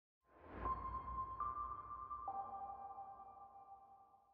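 Electronic logo sting: a soft swell with a low rumble, then three held chime-like tones entering one after another, the second higher and the third lower, ringing on and slowly fading.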